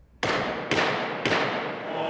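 Three sharp gavel raps on wood, about half a second apart, each ringing on in a large reverberant courtroom: the knock that opens a court session as the justices enter.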